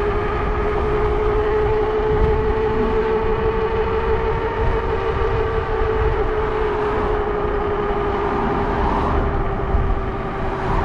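Motorbike cruising at a steady speed: its drive makes one steady whine that barely changes pitch, over the low rumble of wind buffeting the handlebar-mounted microphone.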